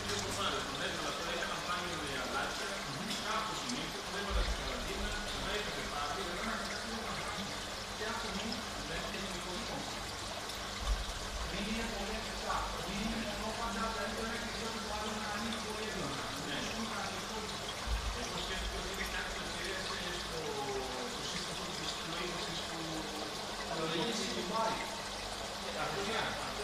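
Indistinct background voices over a steady trickle of aquarium water from tank filters and airlines, with a few soft low thumps.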